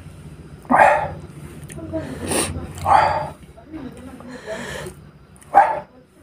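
Three short, loud voice-like calls, about two seconds apart.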